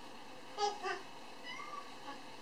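A cat meowing: a short two-part meow about half a second in, then a fainter, rising call near the end.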